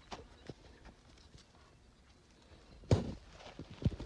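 Faint rustling and a few soft knocks from a ferret being handled through a rope purse net at a rabbit burrow mouth, with one louder thump-like sound about three seconds in.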